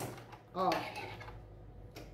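Fabric being pulled out from under a stopped sewing machine's presser foot, with a few light clicks and a soft rustle.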